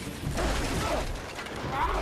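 Wood splintering and debris clattering and crashing as a house porch is torn apart, a film's destruction sound effects.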